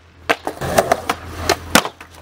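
Skateboard on concrete: wheels rolling, with several sharp clacks and knocks of the board during a flip-trick attempt.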